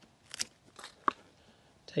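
Scissors snipping through the green vine and stem of a harvested winter squash: a few short, sharp crunching cuts, the loudest about a second in.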